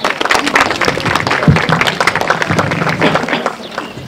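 Audience applauding: many hands clapping at once, thick and steady, easing slightly near the end.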